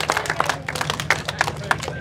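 A small group of people clapping, with irregular individual claps that thin out near the end.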